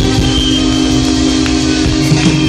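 Live reggae band playing amplified: held chords from guitars and keyboard ring on over the bass guitar.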